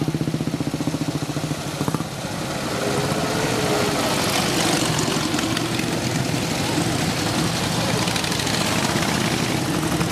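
Vintage motorcycle engines running. A close engine idles with a fast, steady beat until about two seconds in, when its sound falls away as it moves off. Then a denser mix of several engines follows as the next machines ride up, one briefly rising in pitch.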